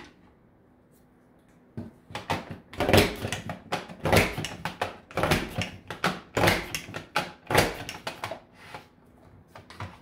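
Creative Memories Border Maker woven scallop punch cartridge stepped down a strip of cardstock: a steady run of sharp clacks, about two a second, starting about two seconds in, each one a punch cutting the border pattern into the paper.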